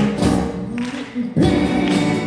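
A live pop band with acoustic and electric guitar plays while several voices sing. The music thins out briefly about a second in, then the full band comes back in loudly.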